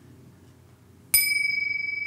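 A small handheld metal bell struck once about a second in, giving a clear, high ringing tone that keeps sounding. It is rung to open a chanted invocation.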